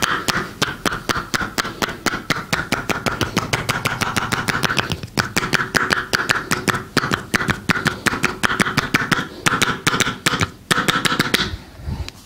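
Rapid hand-chopping massage (hacking tapotement): the edges of the hands strike the bare back and shoulders several times a second in an even rhythm. There are short breaks about five seconds in and again near the end, and the chopping stops just before the close.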